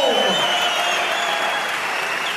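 Large arena crowd applauding a fighter's introduction. The tail of the ring announcer's drawn-out, echoing call falls away in the first half-second.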